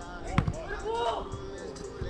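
A soccer ball is struck once on an artificial-turf pitch, a sharp thud about half a second in. Players' voices call out briefly just after it.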